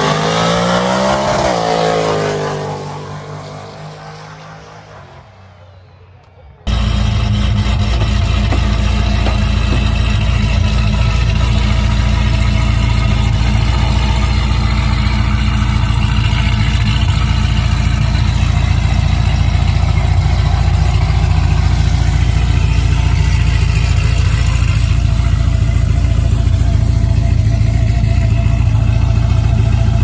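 A drag car accelerating away down the strip: its engine note climbs, drops once at a shift, then fades with distance over a few seconds. After a sudden cut, a steady loud low drone runs for the rest.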